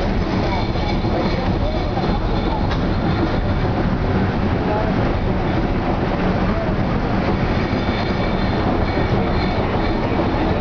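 Logging-railroad train pulled by locomotive No. 10, heard from an open passenger car: a steady, unbroken running noise of wheels rumbling and rattling on the rails.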